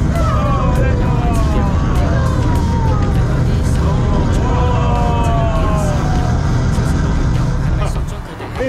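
Loud steady low rumble of a simulated rocket launch played through an exhibit's sound system, with several high tones sliding down in pitch over it. The rumble cuts off suddenly at the end.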